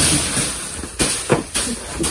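Loose straw rustling and crunching as flakes of straw are kicked and flung across a barn floor to spread it as bedding, with a couple of sharp thumps about a second in.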